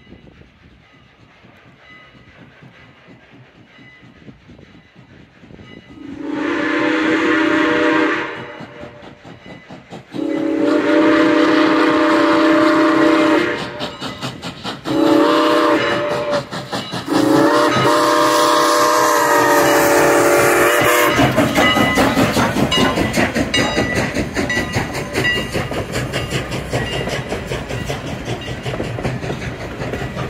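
Steam whistle of CN 89, a 2-6-0 steam locomotive, blowing the grade-crossing signal: long, long, short, long, with the crossing bell ringing faintly before it. After the last blast the locomotive and its coaches roll past close by, a loud steady rumble of wheels on rail.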